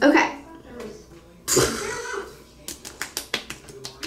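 A short vocal sound at the start, then a sudden noisy rush that fades over half a second. After that comes a quick, irregular run of about ten light taps, fingertips patting skin.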